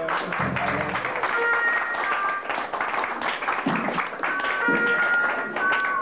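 Live three-piece rock band playing an instrumental passage on electric guitar, bass and drum kit, with busy drums and cymbals and some held guitar notes.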